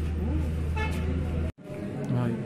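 Vehicle engine idling with a low, steady drone, with people talking around it. The sound cuts off abruptly about one and a half seconds in.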